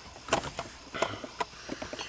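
A few light, sharp clicks and taps from handling a handheld automotive scan tool, three of them clearest, over a steady faint hiss.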